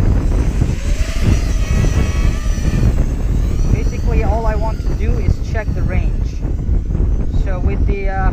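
Small FPV racing quadcopter in flight, its motors whining in pitch that rises and falls with the throttle, over a heavy low rumble of wind on the microphone.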